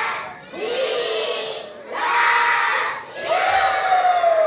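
A large group of children shouting together in repeated bursts, three shouts each about a second long with short breaks between them.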